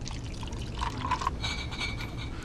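Orange juice drink poured from a bottle into a glass, with a faint ringing tone as the glass fills in the second half, over a steady low cabin hum.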